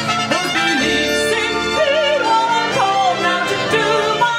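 Song with a woman singing held, wavering notes with vibrato over sustained instrumental backing, in a stretch between sung lyric lines.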